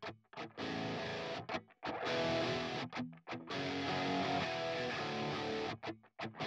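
Distorted heavy electric guitars playing a chorus part of sustained chords broken by several abrupt stops. They are played back dry, without the bus compression plugin applied.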